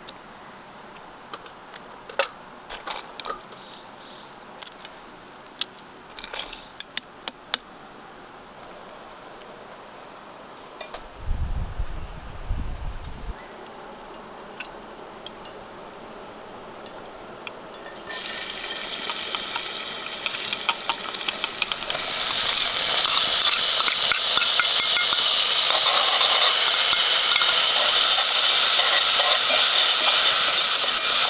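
Scattered light clicks and clinks, with a brief low rumble midway. About two-thirds in, chopped garlic and tomato go into hot oil in a metal pot over a wood fire and start sizzling; the sizzling grows much louder a few seconds later and keeps up, with some stirring.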